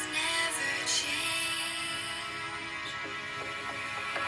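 A pop song with a sung melody playing through a smartphone's small built-in stereo speakers, part of a speaker quality and loudness test.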